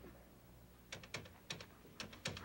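Faint clicks of push-buttons on a desk telephone being pressed to dial a number, four quick presses in the second half.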